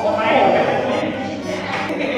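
Noisy, lively chatter of several people talking over one another, with no single voice standing out.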